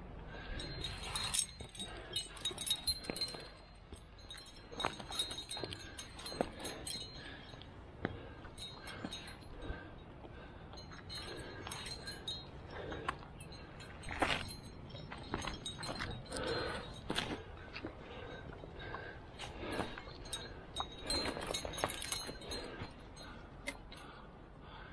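Metal trad-climbing gear clinking irregularly, with carabiners and protection on a harness rack jingling against each other as the climber moves, in many short, sharp, ringing clinks.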